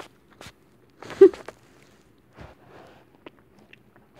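Close-up mouth sounds of someone chewing soft, squishy gummy fruit snacks: small wet smacks and clicks scattered through, with a short, louder hum about a second in.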